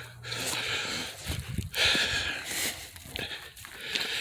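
Footsteps crunching through dry leaf litter on a rocky woodland trail, in about three uneven stretches.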